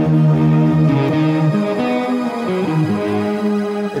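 Electric guitar through a mildly overdriven Custom Audio OD100 amp, boosted by a Maxon SD9 and modulated by a Drybell Vibe Machine, now fed into an Eventide H3000's Crystal Echoes program. The notes are long and held, changing pitch every half second to a second, and the H3000 layers shimmering pitch-shifted echoes over them.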